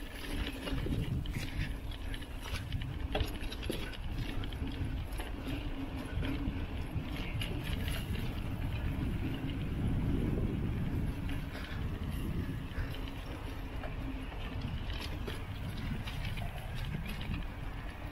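A bicycle rolling along a rough dirt track: a steady low rumble with light rattles and clicks.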